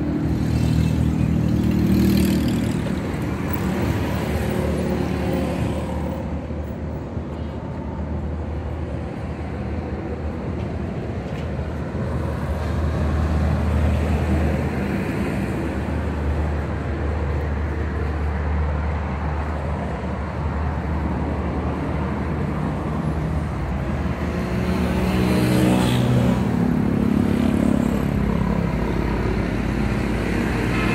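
Road traffic: a steady rumble of passing vehicles, with a louder engine going by near the start and another toward the end.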